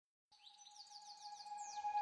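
Silence, then a subscribe-reminder clip's soundtrack fades in about a third of a second in: one steady high tone under a quick run of falling, bird-like chirps, growing louder.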